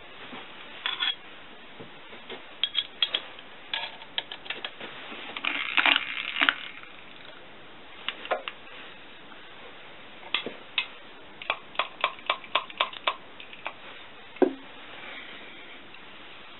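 Hand-tapping a thread in an aluminium flange with a tap in a T-handle tap wrench: irregular small metallic clicks and clinks from the tap and wrench, with a dense cluster about six seconds in and one sharp knock near the end.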